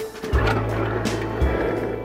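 Sliding side door of a 1974 VW bus rolling open along its track, a noisy slide lasting about a second and a half, over background music with a steady beat.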